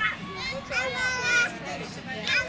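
Children's high-pitched voices shouting and calling out, loudest around the middle.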